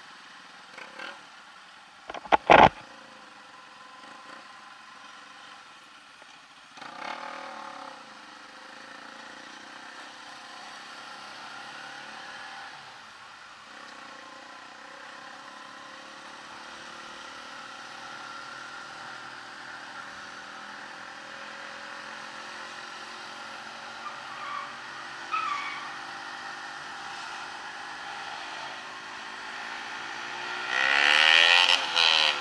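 Bajaj Pulsar NS 200's single-cylinder engine running steadily under way, heard from the rider's seat over wind noise, its pitch creeping up gently in the second half. A sharp knock about two and a half seconds in is the loudest sound.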